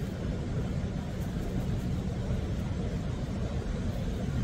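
Steady low rumble of ocean surf breaking along a rocky shore, with no distinct events.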